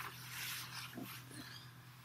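Low steady hum with a faint hiss inside a parked lorry cab, and one brief faint sound about a second in.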